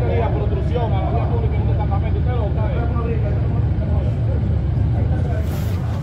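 Several indistinct voices talking at once over a steady low rumble.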